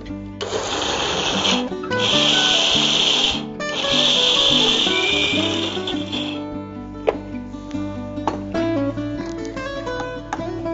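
Electric mixer grinder run in three short pulses, the last the longest, coarsely grinding lentils with red chillies.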